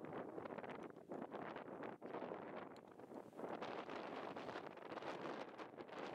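Faint, gusty wind buffeting the microphone over dry grassland, rising and dipping every second or so.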